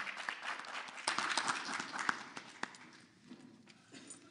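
Audience applauding. The clapping swells about a second in and dies away near the end.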